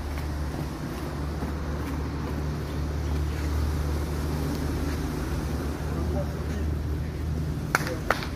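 Indistinct voices of players over a steady low rumble, with two sharp clicks close together near the end.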